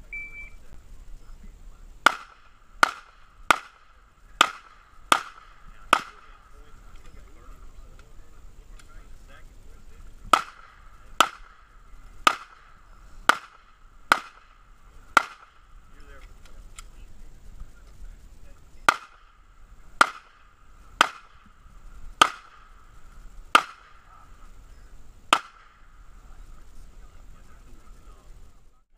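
A shot timer's short electronic start beep, then a handgun fired in about eighteen single shots, grouped in three strings of six with pauses of about four seconds between strings.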